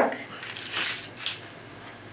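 Small .177 airgun pellets rattling and clicking against each other and their plastic tub as they are tipped out into a hand: a short run of light clicks in the first second and a half, then quiet.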